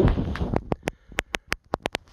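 An uneven run of about eight short, sharp clicks or taps, following a brief soft rustle.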